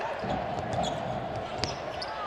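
Basketball game sound in an arena: the steady murmur of the crowd, with a basketball being dribbled on the hardwood court and a few faint short clicks and squeaks.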